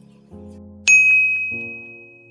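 A single bright, bell-like ding about a second in, ringing on and fading slowly, over soft background music.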